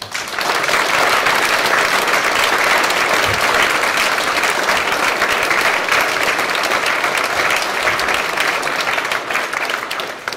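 Audience applauding: steady hand-clapping from a seated crowd that starts at once and fades out near the end.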